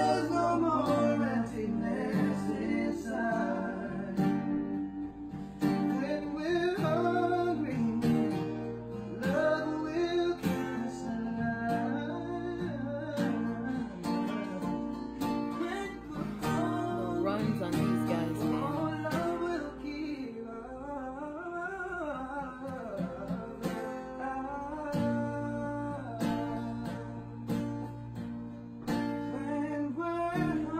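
Men singing a pop ballad to the accompaniment of a single acoustic guitar, the voices moving through melodic runs over steady guitar chords.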